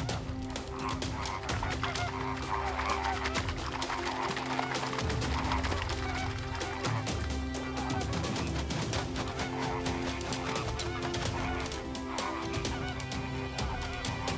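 Greater flamingos calling with goose-like honks, many overlapping calls at once. A steady, low musical drone sits beneath them.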